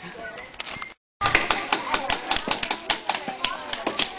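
Voices over a crowded run of quick light taps and clicks, after a brief dropout to silence about a second in.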